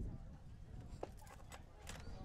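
Faint ballpark ambience: a low, steady rumble of background noise with a few faint knocks in the second half.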